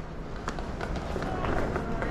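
City street ambience: a steady low traffic rumble with footsteps on stone paving and a faint murmur of voices.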